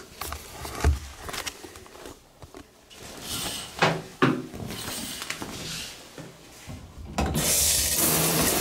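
A few knocks and rubbing sounds from handling, then near the end the shower is turned on and water starts running with a loud, steady hiss.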